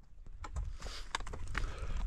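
Footsteps crunching on loose rock, with a scatter of sharp clicks and scrapes, over a low rumble of wind on the microphone.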